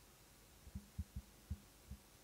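About five soft, low thumps in quick, uneven succession, starting a little under a second in, over a quiet room.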